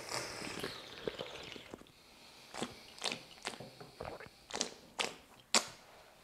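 Aged sheng puerh tea being sipped with a slurp over the first two seconds, then a series of about six short, sharp mouth clicks and smacks as it is tasted.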